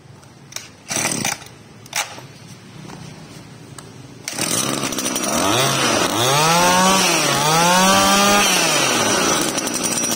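Maruyama brush cutter's small 24cc two-stroke engine: a few short knocks, then it catches about four seconds in. It is revved up and let back down twice, then runs steadily.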